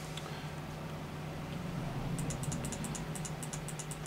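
A fast run of light computer clicks, about nine a second, starting about two seconds in, over a steady low hum.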